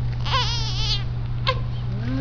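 Newborn baby fussing: one short, high, wavering cry, then a brief squeak about a second later.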